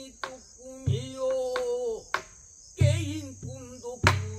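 Pansori singing by a male singer, with wavering held notes, accompanied on the buk barrel drum. Low drum thumps come about a second in and near three seconds, and sharp stick cracks come at the start and a little after two seconds.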